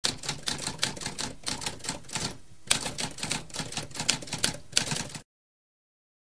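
Typewriter keys typing in a quick, uneven run of clicks, with a short pause about halfway through; the typing stops shortly before the end.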